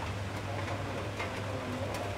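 Background ambience in a lull between speech: a steady low hum, faint distant voices and a few light clicks.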